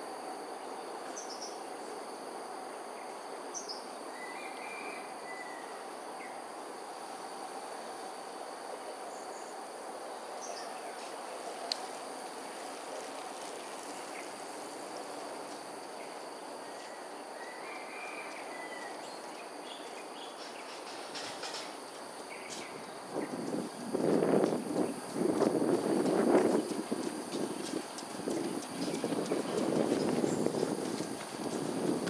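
Outdoor ambience of a steady insect drone with a few short bird chirps. From about 23 seconds in, louder irregular knocks and rustles take over.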